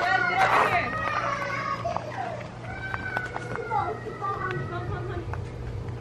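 Background voices of adults and children talking and calling out, loudest in the first second, with a steady low hum underneath.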